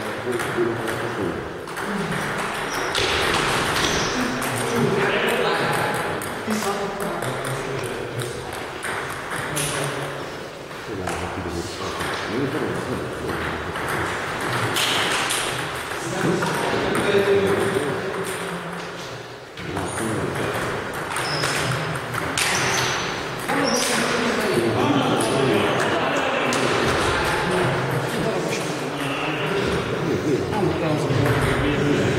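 Table tennis ball clicking off paddles and the table in rallies, with people talking in the background.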